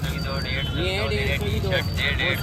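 People talking at a street-market clothing stall, with several voices over a steady low rumble of market and traffic noise.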